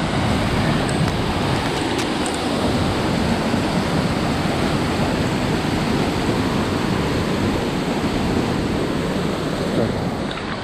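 Steady rush of a fast-flowing river over rocks.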